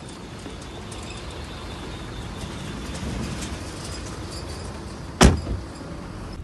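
A car door slammed shut once about five seconds in, a single loud thud, over the steady low rumble of a car idling.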